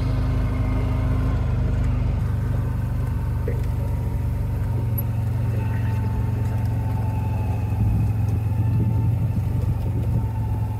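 A vehicle's engine running with a steady low hum as it drives along.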